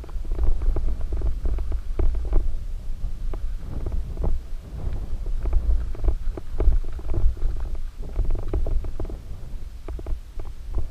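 Mountain bike rolling down a dirt singletrack, heard through a muffled bike-mounted GoPro: a steady low rumble of tyres and wind with frequent irregular clatters and knocks as the bike rattles over the rough trail.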